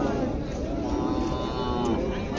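A cow mooing once, a drawn-out call lasting about a second that falls slightly in pitch, over the murmur of a crowd.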